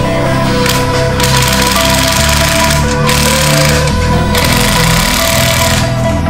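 A cordless power tool rattles in bursts as it runs down hose clamps on an engine's intake charge pipes: a short burst about a second in, then longer runs with brief pauses. Electronic background music plays throughout.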